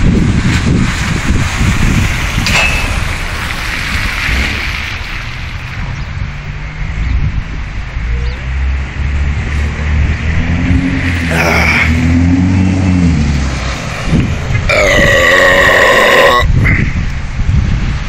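Wind buffeting the microphone while a can of soda is gulped down, with a low hum that rises and falls in the middle. Near the end comes a loud, drawn-out burp lasting about two seconds.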